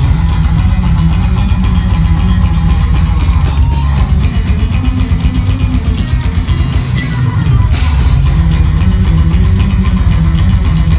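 Death metal band playing live, loud: distorted electric guitar and bass over drums, with a heavy low end.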